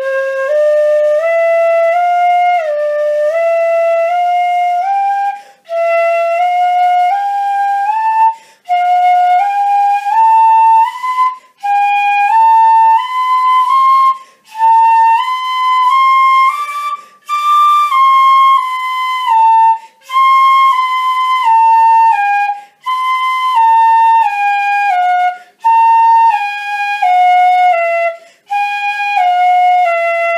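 A pífano (Brazilian fife) in C plays a slow legato scale exercise in short runs of four notes, each ended by a quick breath. The runs climb step by step to the high D of the second octave around the middle, then come back down.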